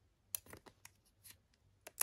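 Faint, short clicks and ticks of metal tweezers picking at a small sticker, lifting it off its backing paper. The clicks are scattered irregularly, with one sharper click near the end.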